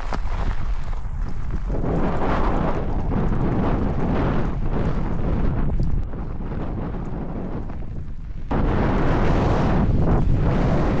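Wind buffeting the microphone during an electric mountain bike ride: a heavy, rumbling rush that steps up sharply a couple of seconds in, drops at about six seconds and surges again near the end.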